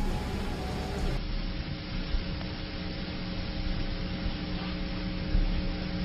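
Radio dead air after the broadcast signal dropped out: steady static hiss over a low hum, with no voice. The hiss turns duller about a second in.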